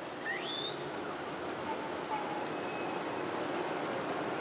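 Steady background hiss and room tone of an old recording, with a faint short rising chirp about a third of a second in and a faint thin tone around the middle.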